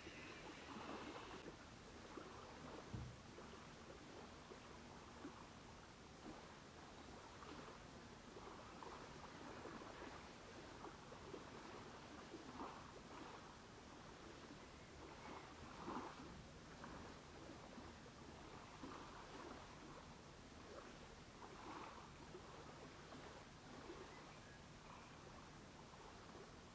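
Near silence: small waves lapping faintly and irregularly at a pebble shore on calm water, with one soft thump about three seconds in.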